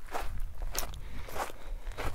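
Footsteps: about four evenly spaced steps.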